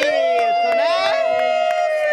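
Excited voices: one voice holds a long, high, almost level "ah" while other voices rise and fall around it, with a few sharp claps or knocks in between.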